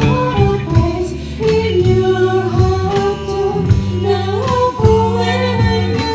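Live band playing a song: a woman singing the melody over drum kit, bass guitar and electric guitar, with the drums keeping a regular beat, recorded in a rehearsal room.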